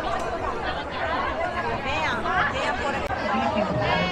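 Close conversation in a woman's and a man's voices over the steady chatter of a crowd of people at surrounding tables.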